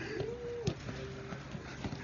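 A football kicked on grass: a sharp thud about two-thirds of a second in, with a fainter knock near the end, amid drawn-out calls from players.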